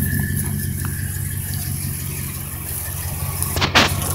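A 1983 Dodge D150's 318 V8 idling steadily through dual Flowmaster mufflers, shortly after a cold start. A brief scuffing noise sounds near the end.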